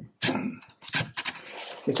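Cardboard packaging scraping and rubbing as a smart speaker in its cardboard inner sleeve is slid up out of its box, with a sharp click at the start and another about a second in.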